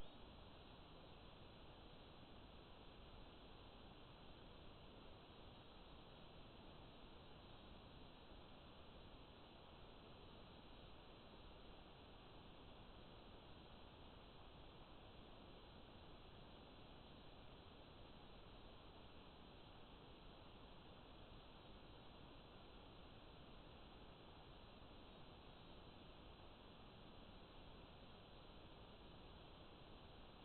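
Near silence: a faint, steady hiss with no other sound.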